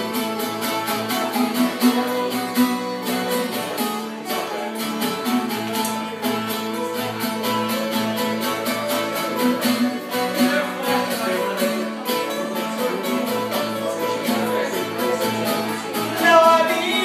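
Two acoustic guitars strummed together in a steady rhythm, an instrumental stretch between sung lines of a song.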